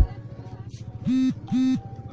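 A break in background music, with two short, identical horn-like beeps about half a second apart, starting about a second in.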